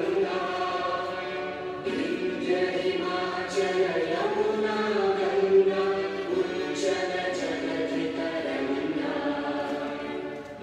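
A choir singing slowly in long held notes, many voices together, as for a national anthem.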